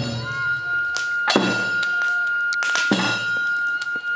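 Tsugaru kagura shrine music: a bamboo kagura flute holds one long high note while drum strokes fall about every one and a half seconds, each with a ringing tail.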